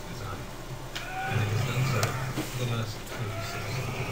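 A man's voice narrating, speaking in steady phrases with short pauses between them.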